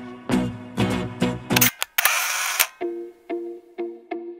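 Background music: a run of short, pitched, percussive hits, then a brief burst of noise about two seconds in. After that, short clicky notes repeat about two and a half times a second.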